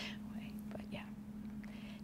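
A woman speaking softly, almost in a whisper ("But yeah"), over a steady low hum.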